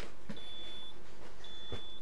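Hurner HST-S-160 electrofusion welder beeping twice as it powers up, with two steady high-pitched beeps each about half a second long and about a second apart, marking its power-on self test.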